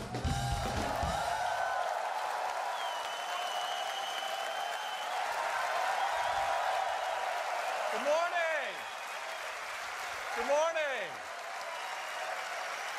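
Large auditorium audience applauding and cheering, with loud whoops about eight and ten and a half seconds in. A music track fades out during the first couple of seconds as the applause rises.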